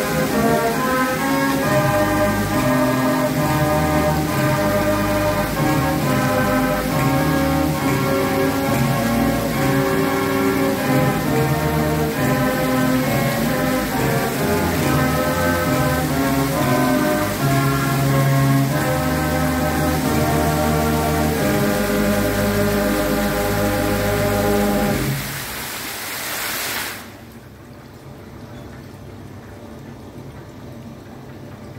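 Show music playing over the hiss and splash of fountain jets. The music stops about 25 seconds in, the water spray carries on alone for a couple of seconds, and then it cuts off abruptly, leaving a faint hiss.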